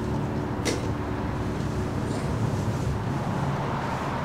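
Steady low rumble of street traffic, with a single sharp click under a second in. The last sustained keyboard notes fade out over the first two seconds.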